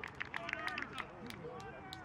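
Indistinct voices of rugby players and spectators talking and calling across an open pitch, with many short sharp clicks scattered through it.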